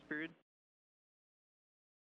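Silence: a man's voice cuts off in the first moment, and then there is no sound at all.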